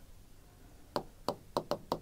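A pen tapping against an interactive display screen as a mark is written on it: about six light taps in the second half.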